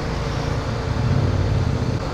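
Motorcycle engine running steadily while riding, heard from the rider's position with road and wind noise; the low engine hum grows slightly stronger about halfway through.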